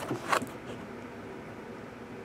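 A brief crinkle of plastic shrink-wrap as a sealed card box is handled, about a third of a second in, then a steady faint hiss.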